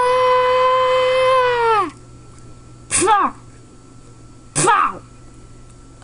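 A person screaming: one long high note held steady for about two seconds, then two short yells that fall in pitch, about a second and a half apart.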